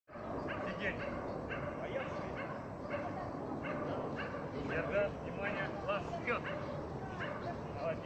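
Dog barking and yipping repeatedly in short calls, more closely bunched a little past the middle.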